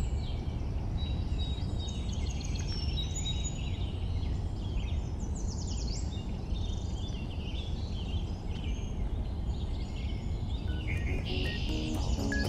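Outdoor ambience: small birds chirping repeatedly over a steady low background rumble.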